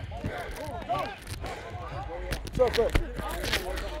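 Players' voices chattering, indistinct, with a few sharp clicks in the second half.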